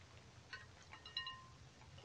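Very faint glass clink with a brief light ringing about a second in, as a hand in a Crisco-coated plastic bag goes into a glass bowl of ice water.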